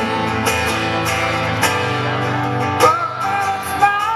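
A live solo acoustic performance: a male voice sings over a strummed acoustic guitar. A fresh sung phrase comes in about three seconds in.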